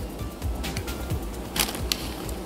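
Small cardboard toy boxes being moved and set down on a tabletop: a few light taps and clicks over a low handling rumble.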